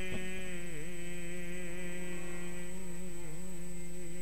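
A man's voice holding one long sung note, steady in pitch with two brief dips, in the style of Sikh kirtan. A short click comes right at the start.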